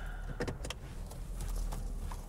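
Car cabin sound at low speed: a steady low engine and road rumble with a few irregular clicks and knocks, as the car is edged out of a tight parallel parking space.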